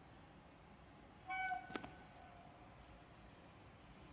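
A short, loud blast of a distant WAP7 electric locomotive's horn about a second in, lasting about half a second and cut off by a sharp click, over faint background hiss.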